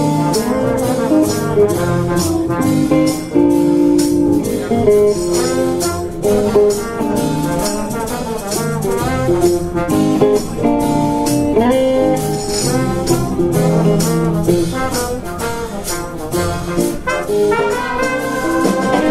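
Live blues-jazz band playing: electric guitar with a high school big band's brass section (trumpets, trombones, saxophone), the horns prominent over a steady drum beat.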